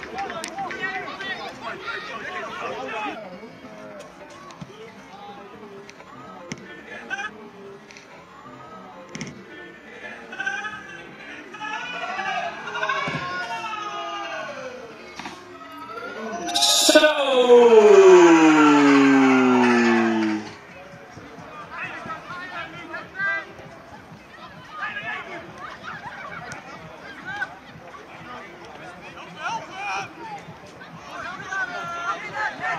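Players shouting and calling across a football pitch. About 17 s in comes a sharp knock, like a kick of the ball, followed by the loudest part: a loud cry falling in pitch with cheering over it for about three seconds, which then drops back to scattered calls.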